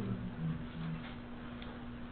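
Pause in a man's speech, filled by the recording's background: a steady low hum with faint hiss.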